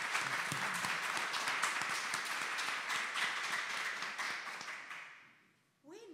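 Audience and panel applause: dense, even clapping that fades away over the last second or so.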